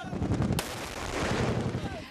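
Gunfire over a crowd of men shouting, with a sharp report about half a second in.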